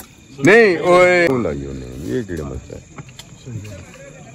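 A person's voice rings out loudly for about a second near the start, followed by quieter voices, over a steady high chirring of crickets.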